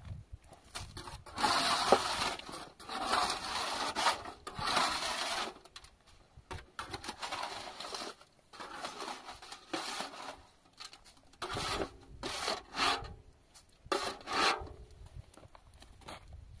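A steel hand trowel scraping plaster, rasping against the roof surface and in a metal basin in a series of separate strokes with short pauses between them.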